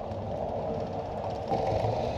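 Steady rolling whir of a track bicycle moving on a velodrome: tyres and fixed-gear chain running, with wind rumbling on the microphone. It gets a little louder about one and a half seconds in.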